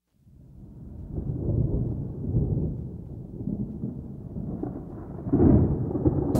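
Recorded thunder rumbling low in slow, rolling waves, growing louder and peaking about five and a half seconds in.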